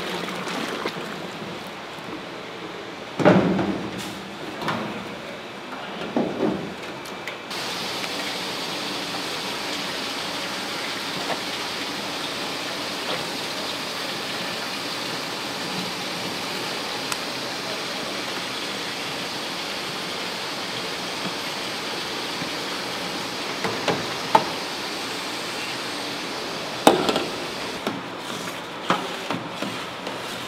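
Steady hiss of boiling water and steam from a large stainless-steel cooking pan, with metal clunks and knocks against the steel. The loudest knocks come about three seconds in and again near the end.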